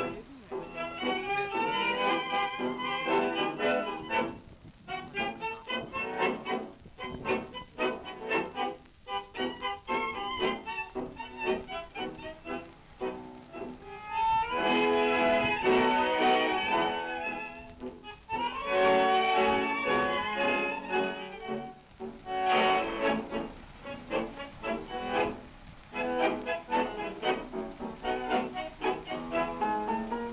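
A 1929 tango orquesta típica recording: bandoneons and violins playing the tune in clipped staccato chords, swelling into fuller held passages about halfway through.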